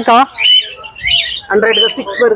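A bird squawking in a short, high-pitched call of about a second, between spoken words.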